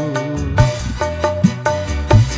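A live campursari band playing an instrumental passage: a keyboard melody of short repeated notes over a steady drum beat with quick, even cymbal ticks and a bass line.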